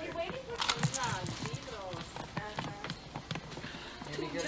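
Indistinct voices of people talking in the background, with no clear words.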